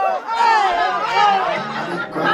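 Several people talking and chattering over background music.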